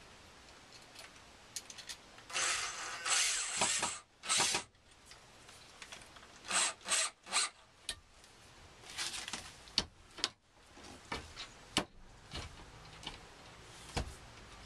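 Cordless drill working into a wooden cabinet door in short bursts, first a longer run, then three quick pulses, followed by a few sharp clicks as the door and its latch are handled.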